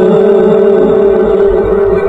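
A man's voice reciting the Quran in the melodic, chanted style, holding one long steady note. A low rumble comes in near the end.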